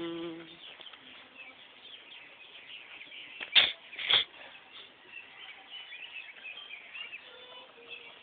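Faint high-pitched chirping of small birds and insects. About three and a half seconds in come two sharp clicks or knocks, half a second apart.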